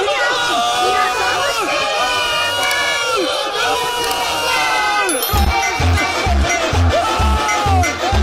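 A stadium crowd cheering, with voices wavering over it. About five seconds in, a music track's heavy bass beat drops in at roughly two beats a second.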